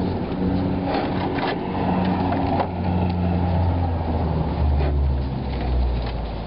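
Knocks and scrapes of a car radiator and its hoses being worked loose and lifted out of the engine bay, with a few sharp knocks about one and one and a half seconds in. Under them runs a low humming drone that drops in pitch near the end.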